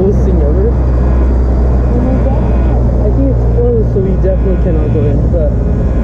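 Muffled talking over a loud, steady low rumble of street noise.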